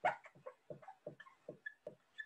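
Dry-erase marker writing on a whiteboard: a quick run of faint short strokes, about five a second, the first the loudest.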